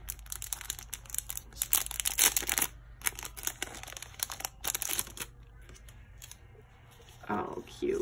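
A small clear plastic bag crinkling as it is pulled open by hand, with many sharp crackles over the first five seconds, then quieter rustling as the paper die-cuts inside are handled.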